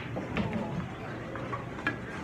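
Pool balls clicking: the cue striking the cue ball and balls knocking together on a pool table, a few sharp clicks with the loudest just before the end, over background chatter.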